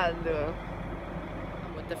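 Wind blowing on the microphone, a steady low rumble, after the end of a woman's words at the start.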